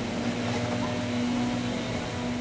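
Steady mechanical drone of an idling vehicle engine, holding one constant tone over a low hum.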